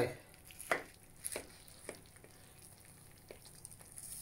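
A few light, irregular clicks and knocks of crockery and serving utensils being handled, the sharpest about three-quarters of a second in.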